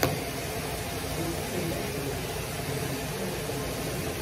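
Bathroom faucet running a steady stream of water into a sink full of clothes, with a brief knock right at the start.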